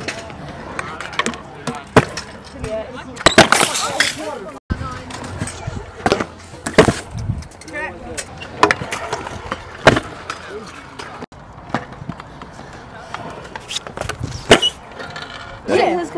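Stunt scooter wheels rolling on concrete, with sharp clacks and clatters from landings and tricks every second or two. Voices chat in the background.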